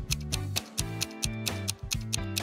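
Background thinking-time music: a quick, steady clock-like ticking over a low bass line.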